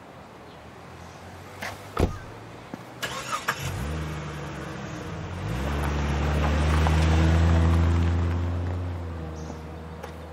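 A car door shuts with a single thud about two seconds in. The car's engine then starts, revs up and the car pulls away, its sound swelling to a peak and then fading.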